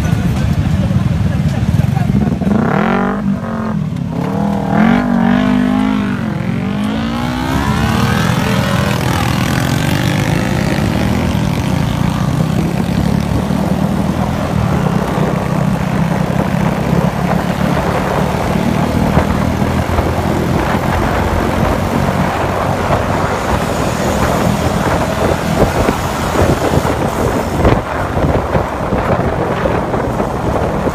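Motor scooter engines running as a pack of riders pulls away and rides down the street, with engines revving up and down in the first few seconds, then a steady engine drone under wind and road noise.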